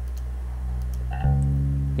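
Electric bass track playing back solo: a sustained low note, then a new note plucked a little past the middle. It is the bass's raw signal recorded through an SSL 9000 console preamp, with a slight distortion in it.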